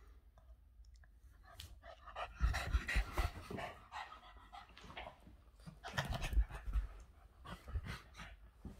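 Boston terrier panting hard during rough play, in two loud spells about two and a half and six seconds in, with a few low thumps among them.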